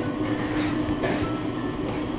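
Steady low machine hum and rumble of restaurant room noise, such as kitchen or ventilation equipment. A couple of faint crackles come through as flaky pastry is torn apart by hand.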